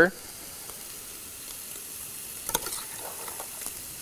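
Faint, steady sizzling from hot pans on a stovetop, with a few light clicks of a spoon against a metal saucepan about two and a half seconds in.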